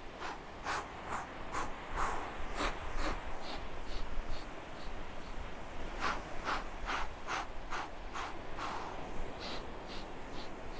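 A person doing the Pilates Hundred, breathing in short, sharp puffs about three a second, in runs with a quieter pause in the middle. This is the rhythmic percussive breathing that paces the arm pumps.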